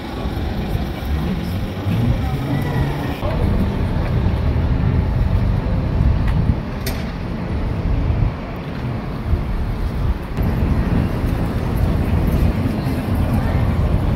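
Wind buffeting the microphone: a loud, uneven low rumble, with the bustle of a busy pedestrian street behind it.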